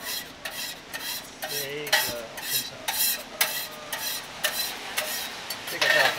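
Food sizzling on a griddle, with a utensil scraping in short strokes about twice a second.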